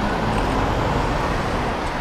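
Road traffic passing close by: a steady rush of car tyre and engine noise.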